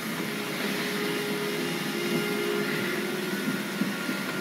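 A steady mechanical whirring hum with a held low tone, which fades out near the end.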